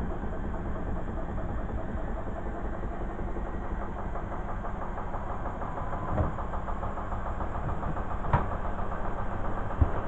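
Beko front-loading washing machine running, a steady mechanical rumble with three sharp knocks in the last few seconds.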